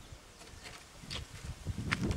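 Faint handling noise of a handheld camera being swung around: a few light knocks and rubbing, with a low rumble building toward the end.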